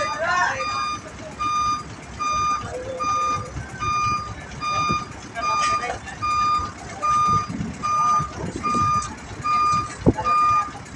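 Isuzu cargo truck's reversing alarm beeping steadily, one beep about every 0.6 seconds, as the truck backs up a loading ramp, over the low running of its engine.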